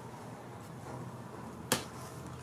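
A single sharp tap, about three-quarters of the way through, as a hand comes down on a pile of paper scraps and cards; otherwise quiet room tone.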